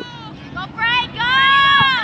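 Spectators' voices calling out from the sideline: a few short high-pitched calls, then one long high shout held for about a second near the end.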